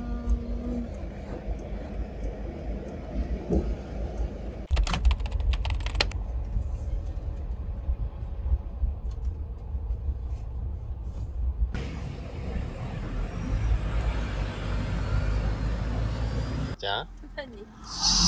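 Camper van cabin noise while driving through city streets: a steady low engine and road rumble, with a steady electronic tone that stops about a second in and a few sharp clicks around five seconds in.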